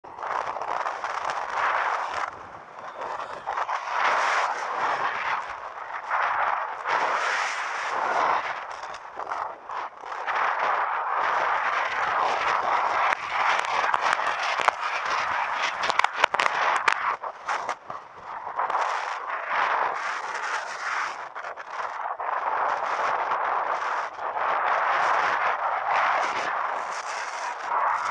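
Wind rushing over the microphone of a camera mounted on a moving bike, with road noise, swelling and fading in gusts every second or two. A few sharp clicks come about halfway through.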